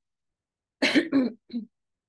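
A person clearing their throat, a short rasp about a second in, then silence.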